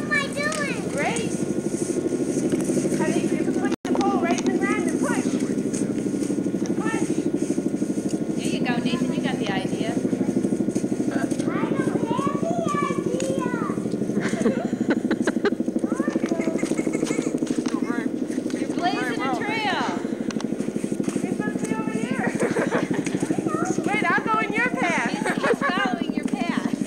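Indistinct high voices, children's among them, calling and chattering over a steady low drone, with a brief dropout about four seconds in.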